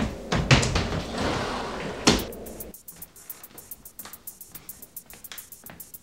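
Hurried scuffling and a sliding closet door banged shut about two seconds in. Then a quieter background music beat with a quick, light ticking.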